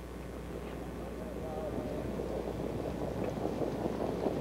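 Crowd voices over a rising rumble as the field of pacers in their sulkies and the mobile starting-gate car come up the stretch toward the start, growing louder as they approach.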